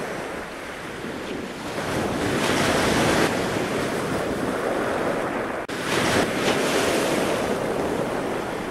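Rushing ocean surf and spray with wind buffeting the microphone, swelling a couple of seconds in, with a momentary dropout a little past the middle.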